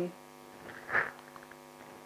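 Steady electrical mains hum in a pause between sentences, with one brief soft sound about a second in.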